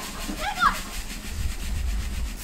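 Coarse sea salt trickling from a pouch into a small measuring cup: a faint grainy hiss over a low rumble, with a brief voice-like sound about half a second in.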